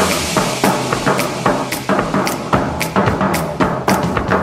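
Up-tempo dance music with a steady drum-kit beat of kick and snare, about three to four hits a second.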